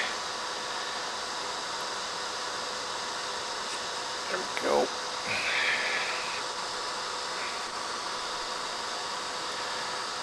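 A steady whirring hiss with a faint hum. About halfway through, a brief murmured voice is heard, followed by a short scratchy rustle.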